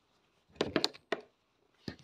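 A few light knocks and taps from a cardboard box being handled and opened: a quick cluster about half a second in, another tap just after one second, and one more near the end.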